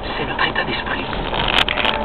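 Steady car driving noise from inside a moving car, with a voice over it.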